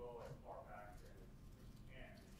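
Near silence in a meeting room, with a faint, distant voice murmuring off-microphone for about the first second and briefly again near the end.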